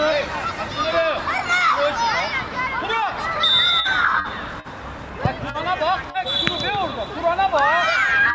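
Several adult voices shouting and calling over one another from the sideline of a children's football match, with a few sharp knocks and two short, steady high-pitched tones partway through.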